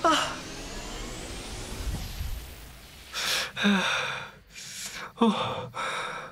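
Short non-word vocal sounds from a person: an exclamation at the start, a breathy gasp about three seconds in, and brief voiced sounds near the end, with quiet gaps between.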